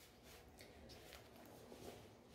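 Near silence, with a few faint rustles of cotton fabric being handled and laid on a cutting mat.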